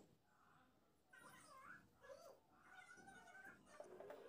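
Near silence, with faint, wavering high-pitched whines in the background from about a second in until shortly before the end.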